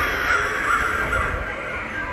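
Crow cawing, played as a spooky sound effect from a Halloween yard display, over a low rumble.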